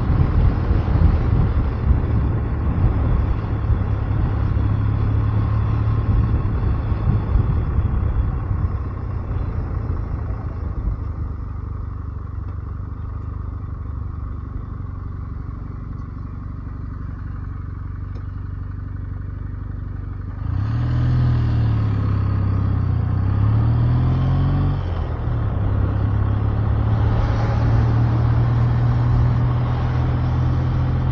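Kawasaki W650's air-cooled parallel-twin engine running steadily on the move. It drops to a quieter, lower run through the middle, then picks up sharply about twenty seconds in, its pitch rising and falling twice through gear changes before settling into a steady cruise.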